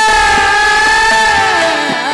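Female voice singing a thumri in raag Mishra Des, holding one long high note over a harmonium drone, then sliding down and back up near the end.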